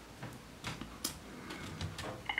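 A few faint, irregular clicks of computer keyboard keys as the text cursor is moved about in a code editor.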